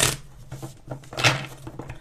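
A deck of tarot cards being shuffled and handled by hand: two short bursts of card noise about a second apart.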